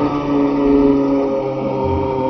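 A man's voice singing one long held note, loud and sustained, over a steady low hum.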